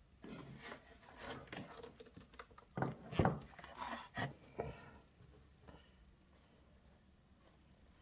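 Handling noise on a wooden model boat hull: irregular rubbing and scraping with a few light knocks for about five seconds, loudest about three seconds in, then quiet room tone.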